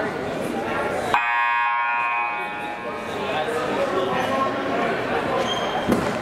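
Gym scoreboard horn sounding once, a buzzing tone that starts sharply about a second in, holds for about a second and a half, and dies away in the hall over crowd chatter.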